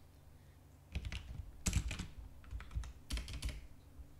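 Typing on a computer keyboard: groups of quick keystrokes begin about a second in and come in a few short runs.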